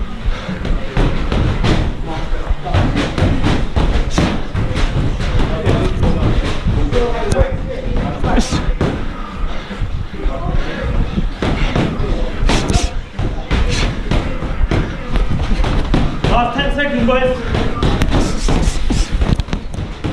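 Boxing sparring heard up close: repeated thuds and slaps of gloved punches landing, many sharp knocks through the whole stretch, over a steady low rumble from the hat-mounted camera moving with the boxer.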